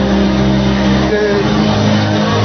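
Church worship music holding sustained chords, with voices from the congregation mixed in.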